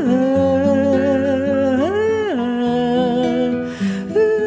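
A singer humming a wordless melody in long held notes, rising and falling in pitch about two seconds in, over backing music with steady sustained chords.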